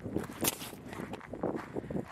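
Footsteps on dry, sandy desert ground: a few irregular steps, the sharpest about half a second in.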